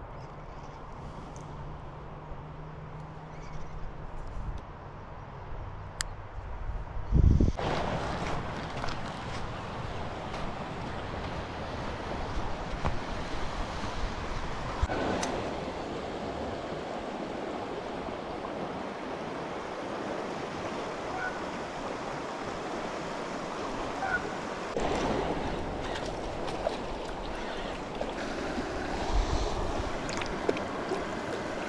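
Steady rush of a fast, shallow creek riffle, water running over rocks, coming in suddenly with a thump about a quarter of the way in after a quieter start.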